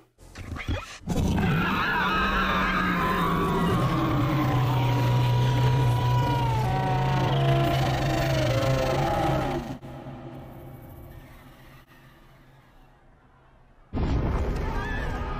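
A dragon's long, screaming roar from a fantasy TV drama's sound track. It starts about a second in, holds for roughly nine seconds with a low steady undertone and pitch that slides downward, then dies away to near quiet.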